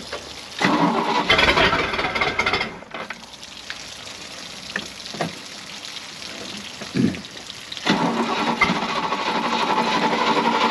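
A boat's inboard V8 engine cranked on the starter in two tries: the first about a second in, lasting about two seconds and stopping suddenly; the second starting near the end and still going.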